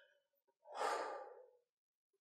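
A woman's short audible breath, a soft rush lasting about a second, taken mid-sentence while reading aloud.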